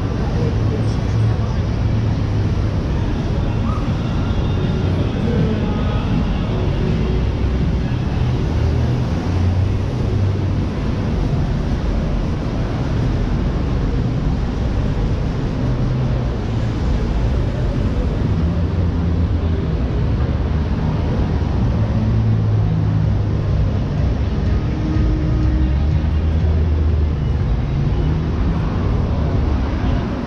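Busy city street at night: traffic running along the road with passers-by talking, a steady mostly low-pitched din with no single event standing out.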